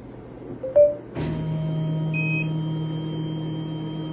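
Monport laser engraver being switched on. About half a second in there is a short rising tone and a click. Just after a second a steady, many-toned machine hum starts suddenly, and about two seconds in the controller gives a short high electronic beep.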